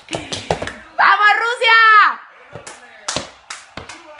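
A high voice gives a long cheering shout about a second in, its pitch falling away at the end. Several short sharp smacks come before and after it.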